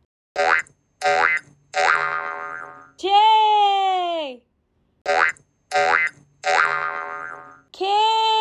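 Cartoon boing sound effects as animated letters spring onto the screen. Each set is three short boings rising in pitch, the last trailing off, then a longer tone that drops in pitch at its end. The set repeats about every five seconds.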